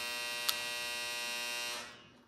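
A steady electrical buzz at an even level, with one sharp click about half a second in; the buzz fades out just before the end.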